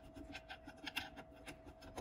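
A magnet-tipped hand driver turning a small steel bolt into the pulse-coil mount of an aluminium generator cover: faint, irregular scratchy clicks of metal on metal, over a faint steady hum.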